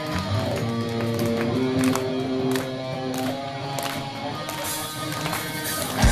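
Electric guitar playing held notes live through a club PA, with a few sharp ticks along the way.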